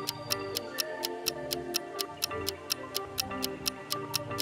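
Countdown timer ticking sound effect, about four sharp ticks a second, over light background music.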